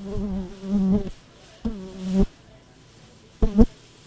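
A man humming without words at a fairly steady pitch: a note of about a second, a shorter one, then a brief loudest one near the end.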